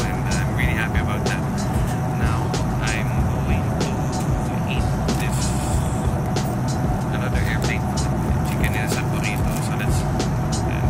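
Steady drone of an airliner cabin, with scattered clicks and rustles of paper and handling close to the phone.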